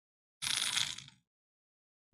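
A person drinking from a bottle: one short, breathy sip noise lasting under a second, about half a second in.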